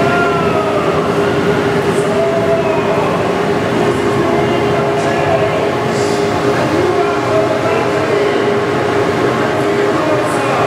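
Several electric fans and a blower running together: a loud, steady rush of air with a constant motor hum.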